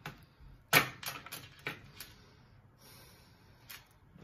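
Tarot cards being shuffled by hand: a run of sharp card slaps and clicks, the loudest a little under a second in, then a soft rustle and one more click near the end.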